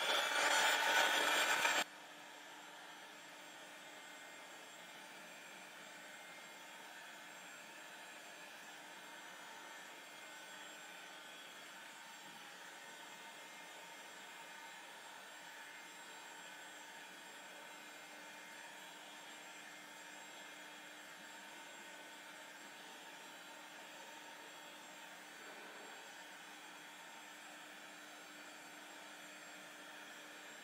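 Handheld heat gun blowing steadily, heating wet paint on a tray: loud for about the first two seconds, then much fainter, a steady even hiss with a faint hum.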